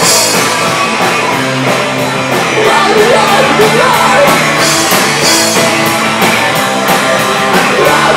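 Live electro-punk band playing loud: a steady drum-kit beat with electric guitar and keyboard, and a singer's vocals over the top.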